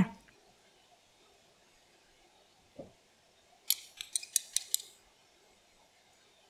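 A quick run of about eight light, sharp clicks over roughly a second, just past the middle, after a single soft knock: small seasoning dishes and utensils knocking against a glass bowl as seasonings are tipped onto raw pork ribs.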